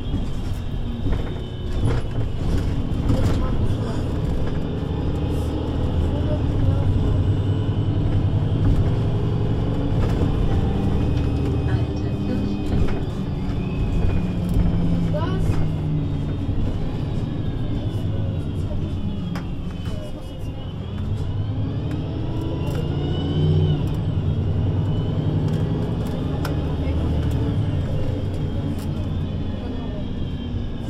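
VDL Citea LLE 120 city bus under way, its diesel engine and Voith automatic gearbox giving a steady drone with high whines above it. About two-thirds of the way through, the whines fall and then rise again.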